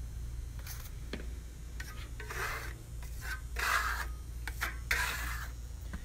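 Steel trowel spreading Venetian plaster on a wall for a second coat: a few light clicks, then about three long rasping strokes in the second half.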